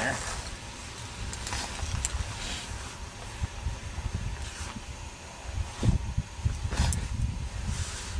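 Uneven low rumble of wind buffeting the microphone outdoors, with a couple of faint short clicks or rustles of handling about six and seven seconds in.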